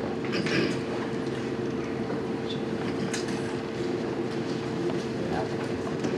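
A steady low rumble with a constant hum, with a few faint knocks and shuffles.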